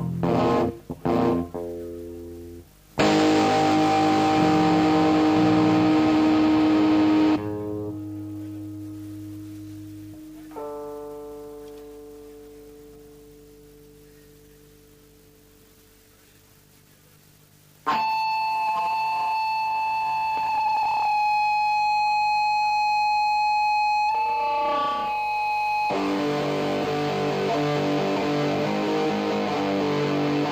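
Distorted electric guitar and bass played live through amplifiers: a few short chopped notes, then a loud chord about three seconds in that rings and slowly dies away, with another note struck about ten seconds in. About eighteen seconds in a steady high sustained guitar tone starts and holds with a slight wobble, and near the end the full band comes in.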